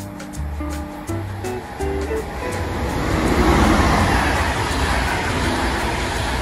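Background music with a steady bass line. About two and a half seconds in, the rushing noise of an ÖBB double-deck passenger train passing at speed swells up under the music, loudest about a second later, then holds.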